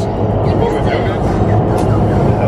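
Steady rushing noise of an indoor skydiving wind tunnel's airflow and fans, with a low steady hum.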